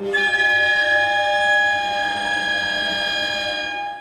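Chamber ensemble of winds and strings holding a sustained chord of several notes, one high note the loudest. The chord comes in sharply and is cut off near the end.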